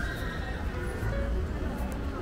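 Music playing against steady market hubbub. Right at the start, a high pitched tone rises and then holds for about half a second.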